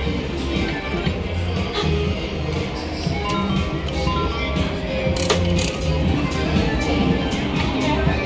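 Casino background music with a reel slot machine's electronic tones as its reels spin and stop, a short run of stepped beeps about three seconds in, and a sharp click about five seconds in as the next spin starts.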